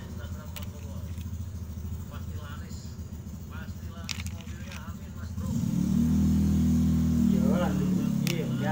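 An engine running with a steady low hum, growing clearly louder about five and a half seconds in.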